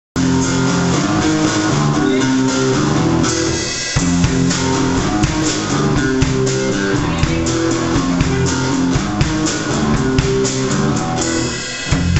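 Live instrumental rock played by a three-piece band: electric guitar, electric bass and drum kit together, with regular drum hits. The music dips briefly just before the end, then comes back in.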